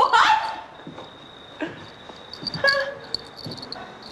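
A woman's loud shout, a brief scream-like call right at the start, then quieter, with a fainter single call about two and a half seconds in.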